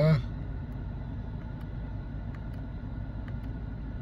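Steady low rumble inside a parked car's cabin, with a few faint clicks as the steering-wheel directional buttons are pressed to page through the digital instrument display.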